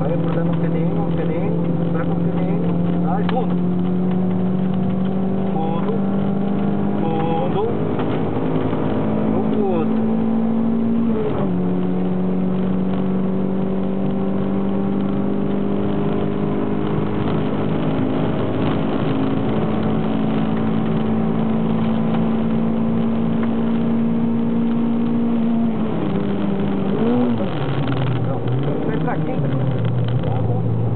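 Toyota MR2 MK2 (SW20) engine heard from inside the cabin under full throttle, its pitch climbing slowly with one sharp drop at an upshift about a third of the way in. Near the end the pitch falls and wavers as the car brakes and shifts down for a corner.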